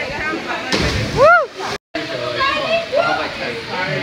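A person jumping into a cave pool: a short splash under a second in, then a single rising-and-falling whoop, with people talking around it. After a sudden cut, voices continue over water sloshing.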